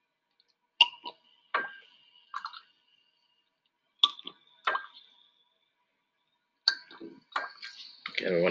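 Drops of 7-Up falling from a plastic dropper pipette into a graduated cylinder while it is filled to a measured 10 mL. About ten separate plinks come at irregular spacing, some in quick pairs, each with a short ringing tone.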